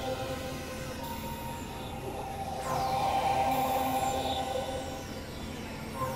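Experimental electronic drone music: sustained synthesizer tones over a low rumble, with a sweep falling from high pitch about every two seconds. The sound swells louder in the middle.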